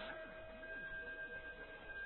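Faint steady hum of two held high tones, with faint slow wavering pitch glides beneath them.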